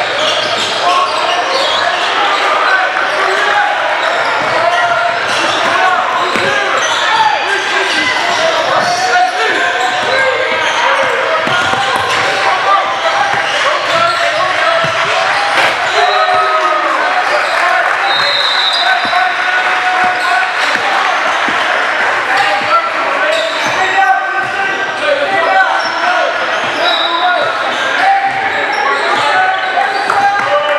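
Basketball bouncing on a hardwood gym floor amid many overlapping, unintelligible voices of players and spectators, echoing in a large hall.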